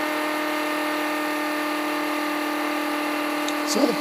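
Homemade Rodin-coil pulse motor spinning at about 18,000 rpm with a steady whine. It is running only on its capacitor charge after the battery was disconnected, and is slowly running down.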